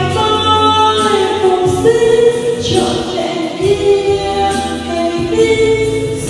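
A woman singing a slow song into a handheld microphone over musical accompaniment, holding long notes.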